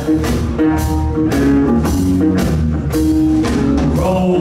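Live rock band playing an instrumental stretch of a blues-rock song: electric guitar and bass over a steady drum beat, with no singing.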